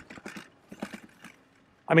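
Electric bike rattling over rough off-road ground in irregular knocks and clicks, with its rear battery bouncing around in its mount.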